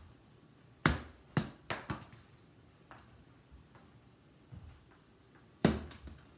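Small balls tossed underhand landing and bouncing in a plastic laundry basket: a quick run of four sharp knocks about a second in, then one more loud knock near the end.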